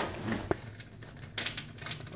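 Handling noise from a phone being repositioned by hand: a few scattered clicks and rubs close to the microphone.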